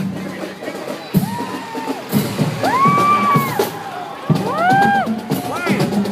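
Marching band playing as it marches past: drums keep a steady beat under trombones and other brass. Over it come a few loud calls that rise and then fall in pitch, a little before the middle and again near the end.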